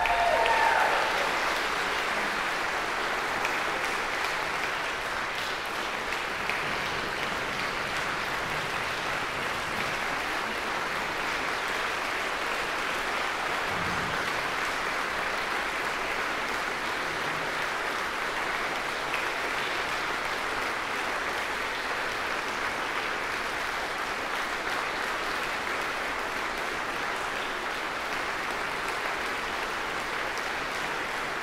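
A large audience applauding steadily, with no break, just after the music has stopped.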